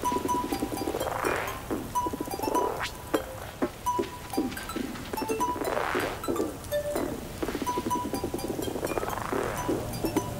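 Acid techno track: a resonant acid synth line whose filter opens and closes in three swelling sweeps, over short high blips and scattered clicks.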